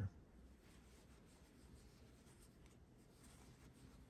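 Near silence, with faint scratchy rustling of yarn drawn over a metal crochet hook as a stitch is worked.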